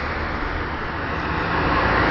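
Steady low rumble of vehicle noise, growing slowly louder.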